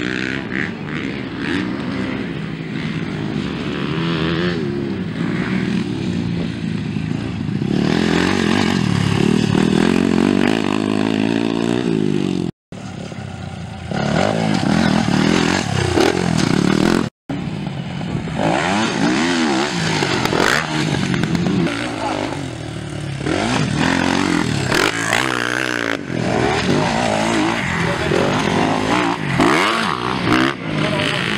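Off-road dirt bike engines revving hard as riders pass one after another, the pitch rising and falling with each pass and gear change. The sound drops out abruptly twice, briefly, partway through.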